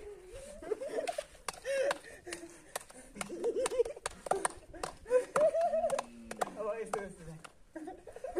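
Several young men's voices laughing and calling out, with sharp hand claps scattered among them.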